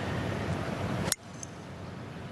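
A golf club strikes the ball on a full fairway shot, making one sharp crack about a second in, over steady outdoor background noise.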